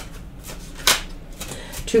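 A deck of tarot cards being shuffled by hand, a soft papery rustle with one sharp snap of the cards about a second in.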